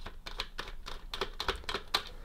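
T9 Torx screwdriver undoing long screws from the plastic top of a tower fan: a run of quick, irregular light clicks.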